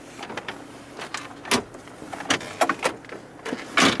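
Clicks and knocks of a Range Rover Sport's plastic glove box catch and lid being opened and handled: about half a dozen short, sharp clicks spread over a few seconds.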